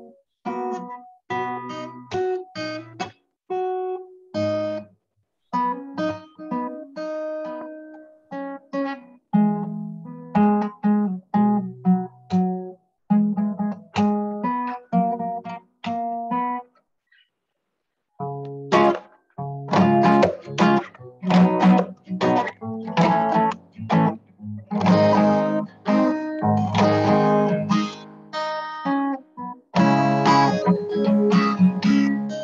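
Acoustic guitar played solo over a video call: picked notes and chords, a short break about seventeen seconds in, then fuller, louder strumming with sharp attacks. The sound cuts out to nothing between many of the notes.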